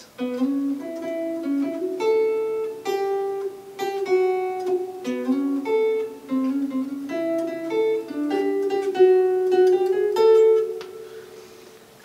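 Electric guitar playing a single-note lead phrase in A, with slides between notes; the last note rings and fades away near the end.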